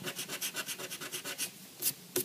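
Rubber eraser rubbed quickly back and forth over paper, about ten strokes a second, lifting a lightly drawn pencil line. The rubbing stops about one and a half seconds in, and a single short click follows near the end.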